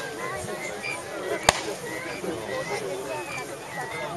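Spectators chatter near the microphone while a single sharp crack of a musket shot rings out from the battle line about one and a half seconds in.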